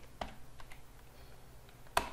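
Computer keyboard being typed on: a few scattered keystrokes, then one louder key strike near the end as the command is entered.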